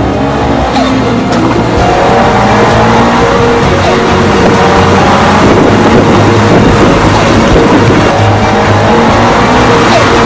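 Subaru Impreza rally-car turbocharged flat-four engine running hard under acceleration, its pitch climbing repeatedly as it pulls through the gears, with music playing over it.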